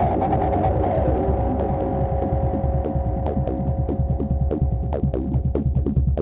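Goa trance in a sparse passage: a throbbing synth bassline with a held synth tone over it that fades near the end. Sharp ticking percussion comes in about halfway through and grows denser.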